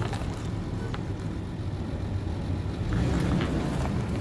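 2003 Nissan Pathfinder's 3.5-litre V6 running at low crawling speed as the SUV creeps over rocks, a steady low rumble with a few faint ticks from the tyres on rock and dirt.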